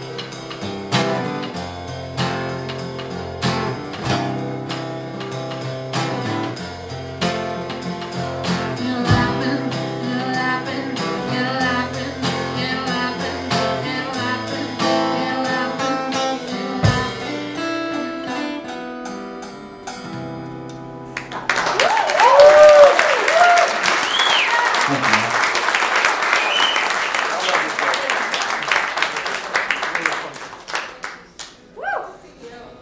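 Instrumental ending of a live indie-folk song on acoustic-electric guitar, with percussion on a homemade drum kit made from upturned paint buckets and cymbals. The music stops about two-thirds of the way through, and the audience applauds and cheers, with a few whoops, until the end.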